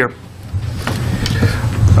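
Room tone: a low steady hum with a few faint clicks and rustles, after one short spoken word at the start.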